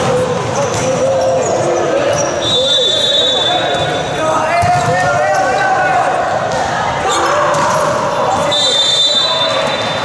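Volleyball rally in a gymnasium: the ball is struck again and again on serve, digs and hits, with players' and spectators' shouting and calling throughout. Two high steady tones sound, one mid-rally and one near the end.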